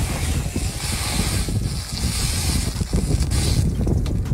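Water hissing and sizzling on a hot steel coil, with wind rumbling on the microphone; the high hiss dies away just before the end.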